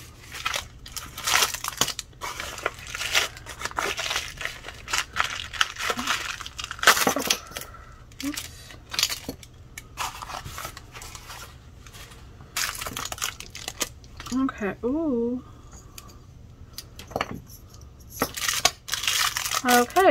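Thin plastic packaging crinkling and rustling as it is handled, in many short irregular bursts. A brief voiced sound comes about three-quarters of the way through.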